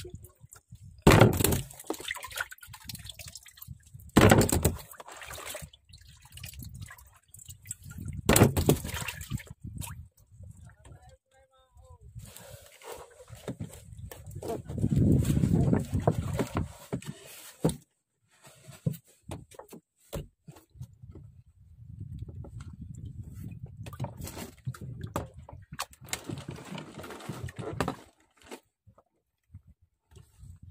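Sea water slapping and sloshing against the hull of a small fishing boat in irregular bursts, with a longer, louder stretch about halfway through.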